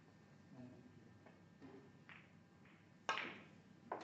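A snooker shot being played: one sharp knock of the balls about three seconds in, ringing briefly, and a smaller click just before the end, in an otherwise quiet hall.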